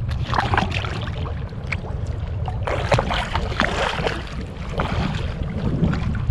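Seawater sloshing and splashing around a man wading neck-deep as he ducks under to dive, heard from a camera at the water's surface over a steady low rumble of water and wind on the microphone. The splashing is strongest about half a second in and again from about three to four seconds in.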